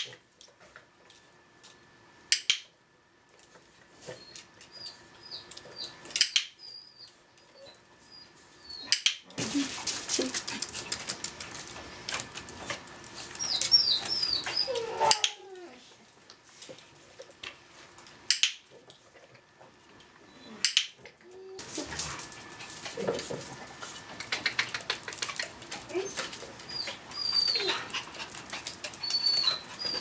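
A Chihuahua searching scent vessels: bouts of rapid sniffing and scrabbling, with short high-pitched whimpers and a few sharp knocks.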